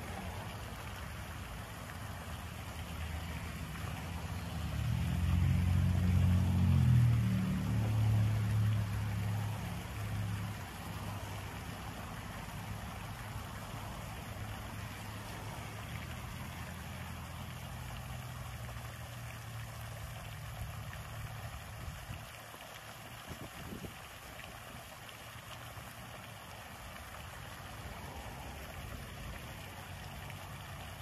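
Fountain water splashing steadily into a stone basin. Over it a vehicle engine's low hum swells to its loudest about six seconds in, fades, and drops away a little past the two-thirds mark.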